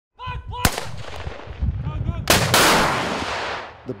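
A shoulder-launched anti-tank weapon fires with a loud blast about two seconds in, which rolls away over about a second and a half. Before it come short shouts and a single sharp crack.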